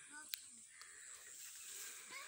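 Quiet outdoor field ambience: a faint steady high hiss, with a brief faint sound and a single click near the start.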